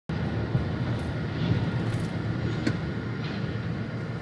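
Steady low rumble of a moving vehicle, with a few faint ticks.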